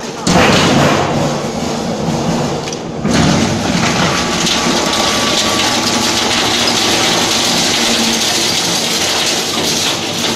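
Metal shredder shredding metal paint buckets: a loud, continuous noise of tearing metal with irregular cracks, rising in loudness about a third of a second in and again about three seconds in.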